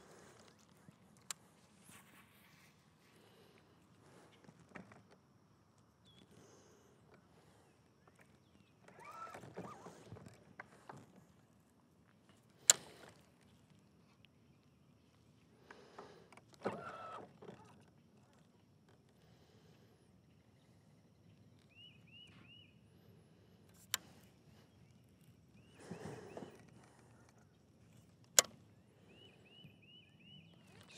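Mostly quiet boat sounds. A bass boat's electric trolling motor runs in three short spells under a faint steady hum, with a few sharp clicks and, twice near the end, a quick run of faint high chirps.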